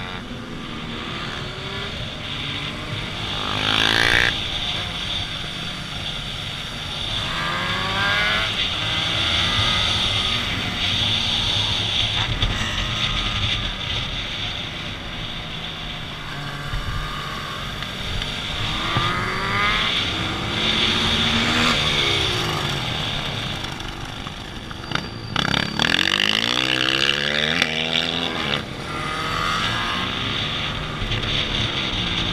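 Motorcycle engine on board revving up and falling back again and again as the bike accelerates and slows around the track. The rising and falling pitch sweeps come several times over a steady rush of running noise.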